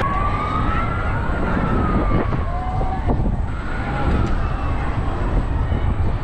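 Wind buffeting the microphone high up on a swing ride, a heavy rumble throughout. A thin wailing tone rises and falls slowly, like a distant siren, and comes back about four seconds in.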